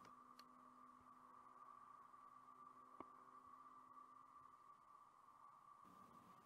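Near silence: a faint steady high tone under the background noise, with a single faint click about three seconds in.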